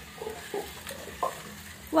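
Faint, light plastic clicks and rattles of toy cars on a plastic toy track set, a few separate clicks over a low steady hiss.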